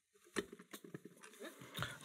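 Faint handling noise of a metal lever lock and key: one sharper click about a third of a second in, then a string of light ticks and taps.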